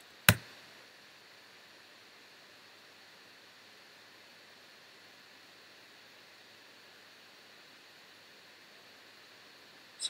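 A single sharp click about a third of a second in, then only a faint, steady hiss.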